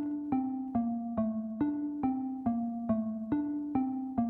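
Software xylophone (ZynAddSubFX 'Xylophone' preset in LMMS) playing a simple melody at 140 BPM, one note about every 0.4 s, each note struck and quickly fading as the line steps up and down in pitch.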